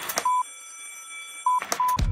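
Electronic glitch intro effect: three short beeps at one pitch, the first early and two in quick succession near the end, over a faint hiss with steady high whines, with crackling clicks at the start and just before the end.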